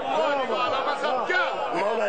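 Several men's voices talking over one another, with no single voice standing out.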